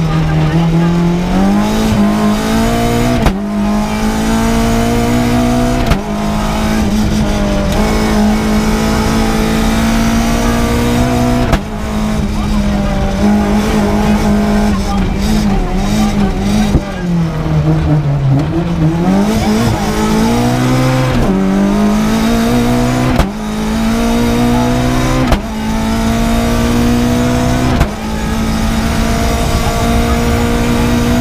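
Renault Clio Williams rally car's four-cylinder engine heard from inside the cabin at full throttle. The pitch climbs through each gear and drops sharply at each of several quick upshifts. Near the middle the revs fall away more slowly, then climb again.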